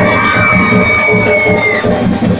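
Live stage music with a steady drum beat and a crowd cheering. A long high held note rises over it and stops shortly before the end.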